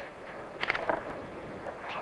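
Hiss of an open telephone line with faint, indistinct background sounds from the far end, including a couple of short soft bursts about half a second to a second in.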